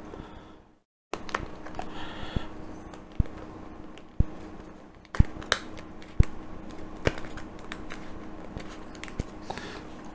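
Hard plastic parts of a 1/6-scale model car seat being handled and pressed together, making a string of irregular sharp clicks and knocks over a faint steady hum.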